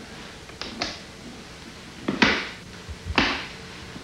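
A hand slapping a man's chest through his shirt, performed as a foley effect for a hand hitting a chest: two faint taps just under a second in, then two firm hits about a second apart.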